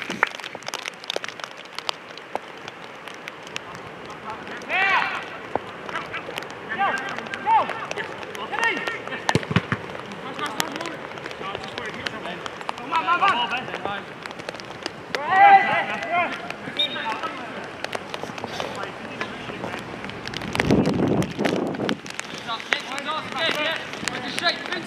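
Players' shouts and calls on an outdoor five-a-side football pitch, several short bursts spread across the stretch. Occasional sharp knocks are heard among them.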